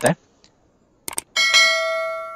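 Subscribe-button animation sound effect: a quick double mouse click, then a single bright bell ding that rings out and slowly fades.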